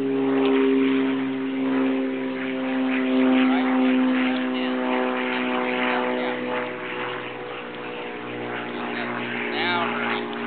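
A steady engine drone holding one pitch, with faint voices in the background.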